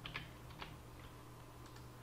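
Faint computer-keyboard keystrokes: a handful of short clicks, most in the first second, as a fillet radius value is typed in.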